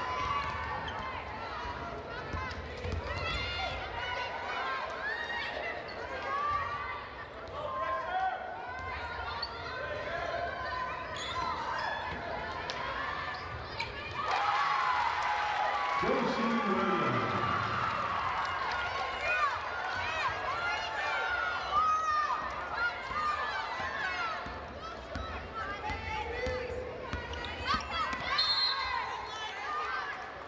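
Basketball being dribbled on a gym's hardwood floor during a game, amid the shouts and voices of players and spectators. About fourteen seconds in, the crowd noise swells as a basket is scored.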